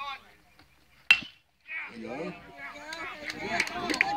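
A bat hits a pitched baseball with one sharp, loud hit about a second in, followed by spectators shouting and cheering.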